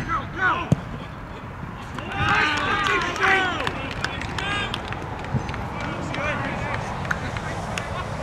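Players' voices shouting and cheering on an outdoor football pitch as a goal goes in, with several voices loudest together about two to three seconds in. A single sharp thud, a ball being kicked, comes under a second in.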